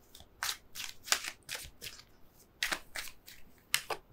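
Tarot cards being shuffled and handled: about ten quick, papery flicks and snaps at an uneven pace.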